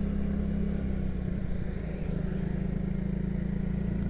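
Motorcycle engine running at a steady cruise, heard from the rider's own bike, with an even hum that eases slightly about halfway through before settling again.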